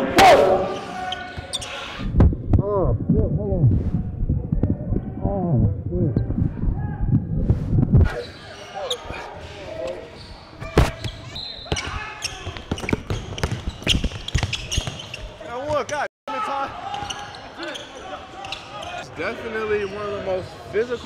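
Basketball game in a gym: a ball bouncing on the hardwood court and sharp knocks, with indistinct voices echoing through the large hall. There is a brief drop to silence about 16 seconds in.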